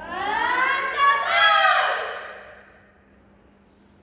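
A boy's loud, drawn-out shout lasting about two seconds, rising and falling in pitch and fading away in the hall: the kata name called out before a karate team kata begins.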